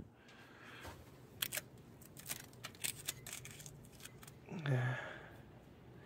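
Faint handling noise: a scattered handful of light clicks and small rattles, with a brief low hum from a man's voice about four and a half seconds in.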